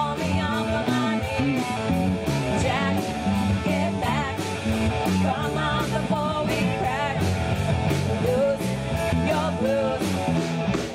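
Live rock band playing: electric guitars and bass over a drum kit keeping a steady beat with cymbal hits, with a vocalist singing over it.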